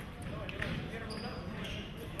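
Indistinct voices echoing in a large sports hall, with scattered thuds of fencers' footwork on the pistes and a short high beep about a second in.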